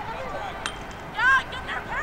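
Short, high-pitched shouts from players or the sideline during open play, with one sharp click about two-thirds of a second in, over outdoor field ambience.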